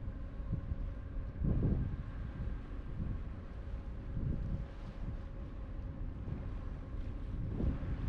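Wind buffeting the microphone on the deck of a cruise ship under way, coming in gusts, the strongest about a second and a half in, over a faint steady hum.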